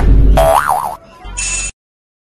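Comedy sound effects: a loud low thud with a pitched tone wobbling up and down over it, then a short second sting of steady high tones that cuts off suddenly.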